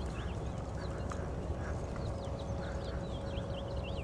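A horse loping on soft arena dirt, its hoofbeats faint under a low rumble of wind on the microphone. Many short, high bird chirps sound throughout, with a faint steady hum.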